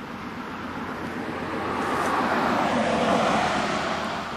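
A passing vehicle, its noise swelling to a peak about three seconds in and then easing off.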